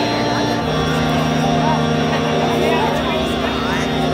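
Crowd chatter over a steady, sustained droning chord from the stage. The chord shifts to new notes about half a second in.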